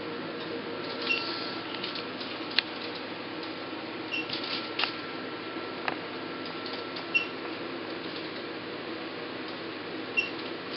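Alma IPL machine running with a steady hum, giving a short high beep about every three seconds as the handpiece fires pulses of light, with scattered sharp clicks between.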